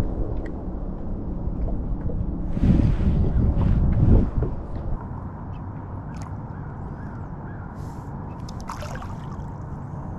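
Water sloshing and gurgling against a plastic fishing kayak's hull, with low wind rumble on the microphone. It is loudest and gustiest for the first five seconds, then settles to a quieter steady wash.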